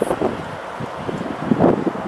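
Wind blowing on the microphone outdoors, a steady rush with a few louder gusts.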